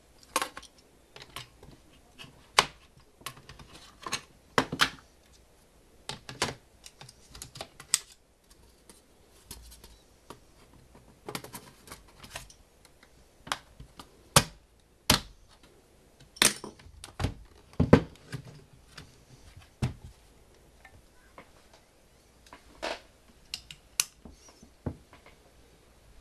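Irregular clicks and knocks of plastic and metal as a laptop is worked on by hand: a 2.5-inch hard drive set in and the plastic bottom cover fitted and pressed back into place.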